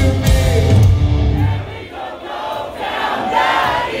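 A pop-punk band plays loudly live, heard from within the crowd. About a second and a half in, the band drops out, and singing and shouting voices from the crowd fill the gap.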